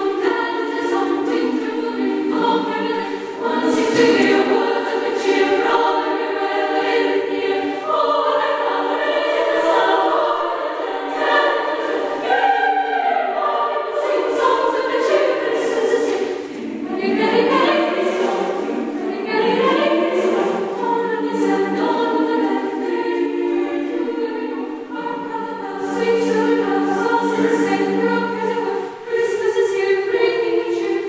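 Mixed youth choir singing in sustained chords, with short dips in volume between phrases.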